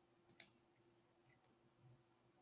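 Near silence, with a single faint click about half a second in.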